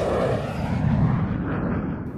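Cinematic transition sound effect: a downward whoosh that ends in a low rumbling boom, which swells about a second in and then fades as its hiss dies away.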